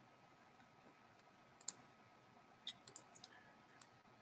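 Near silence broken by a few faint computer mouse clicks: one about halfway through, then a quick handful in the last second and a half.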